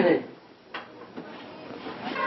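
A single short click or knock about three-quarters of a second in, just after a spoken word ends, with faint room sound around it.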